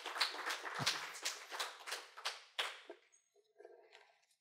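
Small audience applauding: a patter of scattered claps that thins out and stops about three seconds in.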